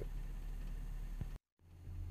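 Steady low hum and hiss from running aquarium equipment such as the nano circulation pumps. It cuts off abruptly to dead silence about 1.4 s in, then a steady low hum fades back up, as at an edit.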